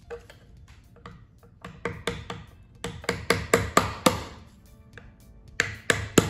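A hammer tapping a flat pry tool into the gasket seam of a Jatco CVT7 transmission's oil pan to break its sealant seal. There are about a dozen sharp metal knocks, mostly in a quick run in the middle and a few more near the end, some with a short ring.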